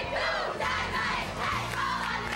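A group of women gymnasts shouting a team cheer together in a huddle, many voices at once.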